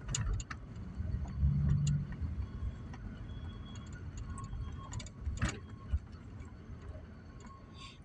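Low, steady rumble inside a car's cabin, with a few scattered sharp clicks.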